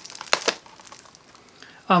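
Plastic Blu-ray cases being handled: a quick cluster of clicks and crinkles in the first half second as one case is put down and the next picked up, then only faint handling noise.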